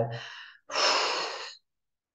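A woman's long, audible out-breath through the open mouth, a sigh of about a second that releases a held deep breath.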